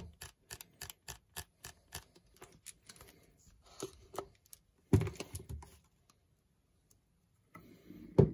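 A Nikon DSLR's aperture controls clicking through their click stops as the aperture is stepped, about three or four small clicks a second for the first three seconds. About five seconds in comes one louder knock of the camera being handled.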